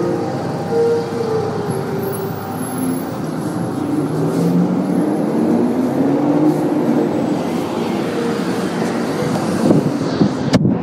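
Street traffic noise: vehicles passing, with low engine tones slowly rising and falling in pitch over a steady rumble.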